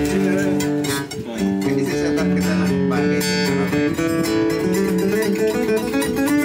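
Steel-string acoustic guitar with a solid Sitka spruce top, rosewood back and sides and phosphor bronze strings (an Elegee Adarna), played with the fingers: picked notes and chords ringing on one after another, with a brief dip about a second in.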